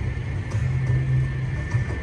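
Steady low rumble of city background noise, with a faint steady high tone.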